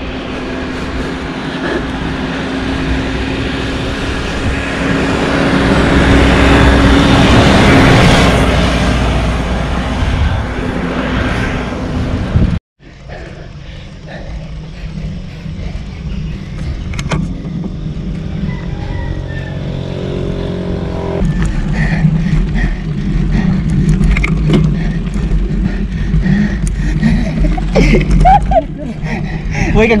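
Wind rushing over an action camera's microphone with road-bike tyre noise on a concrete road, swelling to its loudest about seven seconds in. It cuts out suddenly near the middle and resumes a little quieter, with a low rumble and scattered clicks.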